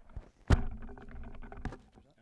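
Handling noise of a handheld microphone being passed from hand to hand: a loud knock about half a second in, then low rubbing and rumbling, and a second knock near the end.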